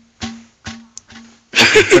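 A frying pan knocked three times in quick succession, each knock followed by a short, fading ringing tone. A burst of loud voice comes in near the end.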